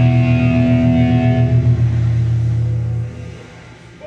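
Live rock band's guitars holding a sustained final chord with strong low notes, which rings on steadily and then dies away about three seconds in, leaving a quieter hall.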